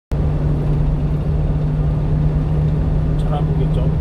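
Steady low engine and road drone inside the cab of a 1-ton refrigerated box truck cruising on the highway, with a constant hum.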